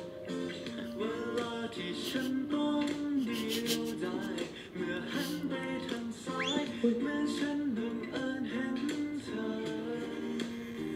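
A song sung over strummed acoustic guitar, played from the drama's soundtrack.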